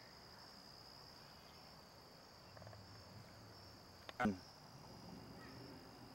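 Faint, steady high-pitched trilling of crickets. A little after four seconds in, a brief sound drops sharply in pitch.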